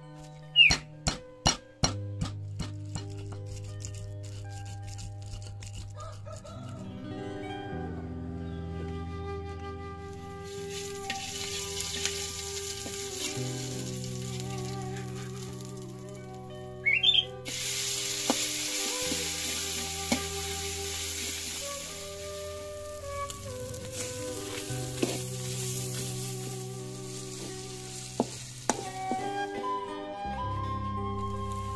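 A stone pestle knocking against a stone mortar (Indonesian cobek and ulekan) as spices are crushed, a few sharp strikes over the first couple of seconds. From about a third of the way in, ground chili-and-spice paste sizzles in hot oil in a wok, growing louder just past halfway as more paste goes in. Background music plays throughout.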